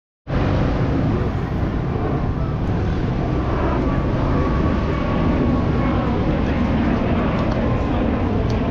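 City street ambience: steady traffic noise with the voices of people walking by.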